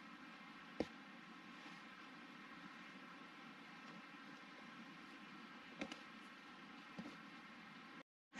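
Near silence: faint steady background hiss with a few soft clicks, the clearest about a second in and two more near the end.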